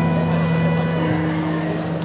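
The accompaniment track's final chord held and slowly fading as a song ends, deep sustained notes with a higher note joining about a second in.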